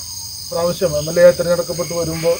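Crickets chirring in a steady, high-pitched drone, with a man talking over them from about half a second in.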